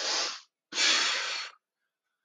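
A man breathing hard through press-ups: two forceful breaths, a short one and then a longer one.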